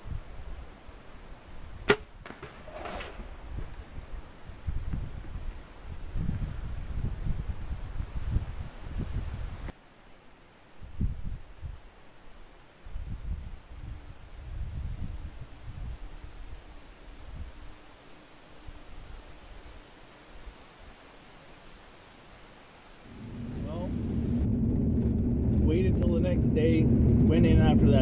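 A single bow shot: one sharp snap of the bowstring releasing the arrow about two seconds in, followed by low rumbling noise. Near the end, steady engine and road noise inside a vehicle cabin rises.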